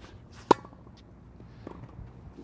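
A tennis ball struck once with a racket on a forehand volley: a single sharp pop with a brief ring. About a second later comes a fainter, more distant knock.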